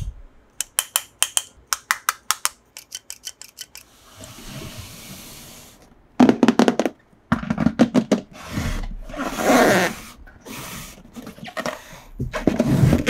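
Small plastic toy clicking repeatedly and irregularly as it is worked by hand, then a hand rubbing, tapping and shifting a large printed cardboard box.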